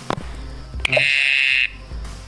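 A click, then a single loud buzzy electronic alert tone from a smartphone lasting under a second and cutting off suddenly; the owner takes it for the phone stopping the recording because its memory is full.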